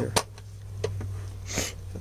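Handling noise: a sharp click just after the start, a faint tick a little later, and a brief hissy rustle or breath near the end, all over a steady low hum.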